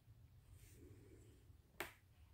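Near silence while a double crochet stitch is worked with a crochet hook and yarn: a faint soft rustle, then one short sharp click near the end.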